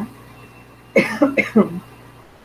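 A woman coughing: a quick run of three or four coughs about a second in.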